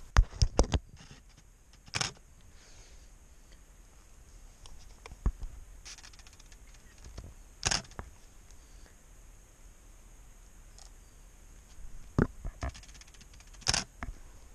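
A DSLR camera being handled and fired close to the microphone: a quick run of clicks and knocks at the start and again about twelve seconds in, with a few single sharper shutter-like clicks in between.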